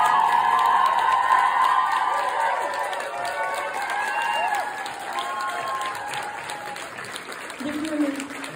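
Audience clapping and cheering, dying down over a few seconds, with a man's voice starting near the end.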